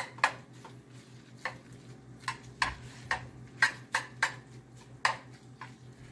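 Metal spoon stirring cooked macaroni in a pot, knocking and scraping against the pot's side in irregular sharp clicks, about a dozen in six seconds.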